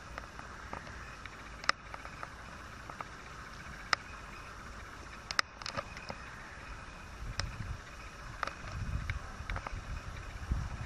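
Young jackdaw pecking at a fallen apple on the ground: scattered sharp clicks of its beak over a steady outdoor background hiss.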